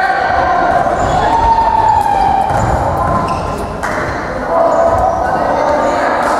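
Indoor football in a sports hall: the ball kicked and bouncing on the hard floor, with players and spectators calling out, echoing in the large hall.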